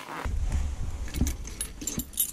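Keys and a carabiner jangling with light metallic clicks as they are lifted off a hook, over a low rumble that starts a moment in.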